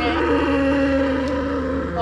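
A cow giving one long, level moo lasting most of two seconds.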